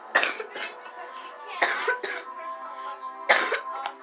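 A boy coughs three times, about a second and a half apart, with music playing in the background.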